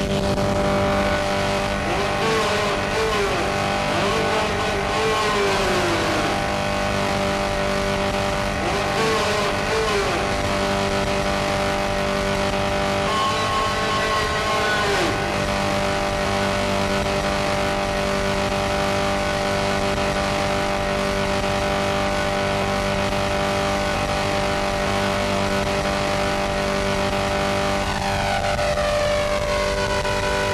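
Harsh noise music: a dense, loud wall of hiss over a stack of steady droning tones, with short falling pitch sweeps about two to ten seconds in and again around fourteen seconds, and a phasing sweep near the end.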